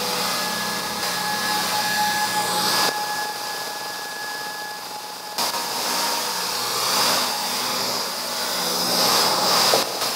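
Wind rushing over a bike-mounted action camera, with mountain bike tyres rolling on a dirt trail: a steady noise that swells and dips as the bike moves.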